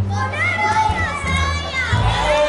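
A group of children talking and calling out over one another, with music and a steady bass line playing underneath from a loudspeaker.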